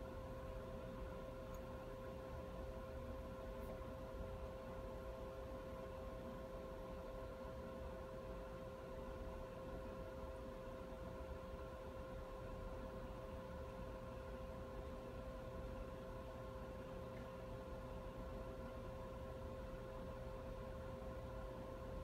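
Faint, steady room tone: a low hum with a thin constant tone in it and nothing else happening.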